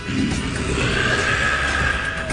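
A demon's long, shrill cry, starting near the middle and held for over a second, over a low rumble and background music.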